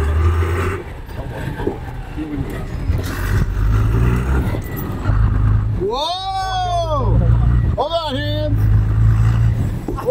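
Steady low engine rumble of a vehicle driving on an icy road. About six seconds in, a long shout rises and falls in pitch, and a shorter shout comes around eight seconds, as the pickup ahead slides sideways.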